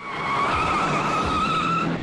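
Car tyres screeching on the road in a sustained squeal with a slightly wavering pitch, starting abruptly and lasting about two seconds before it cuts off near the end.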